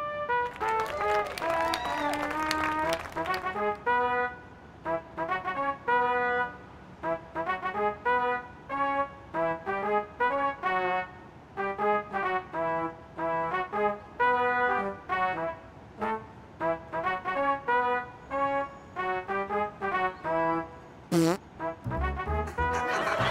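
Comic fart sounds played as a tune: short brass-like blasts at changing pitches in a bouncy rhythm, with a wobbling, sliding run in the first few seconds. A sharp click and a short falling slide come near the end.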